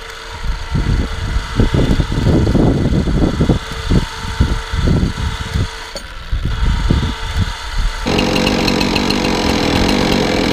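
An engine running steadily under irregular heavy low thumps. About eight seconds in, it gives way abruptly to a chainsaw mounted in a log-bucking frame, running steadily at high speed.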